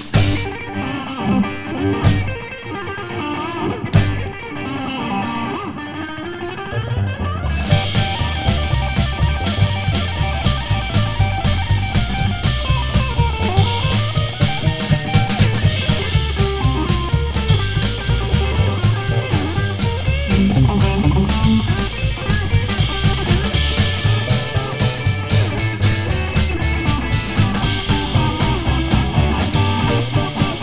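Rockabilly band playing: electric guitar with a few separate drum hits at first, then about seven seconds in the drum kit comes in with a steady beat and the full band plays on.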